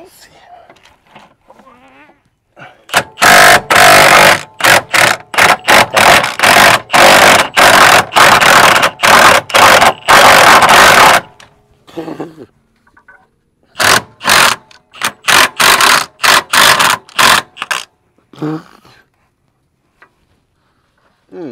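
Cordless impact wrench hammering on an exhaust downpipe bolt in a long run of short, loud trigger bursts, then after a pause of about three seconds a second run of bursts.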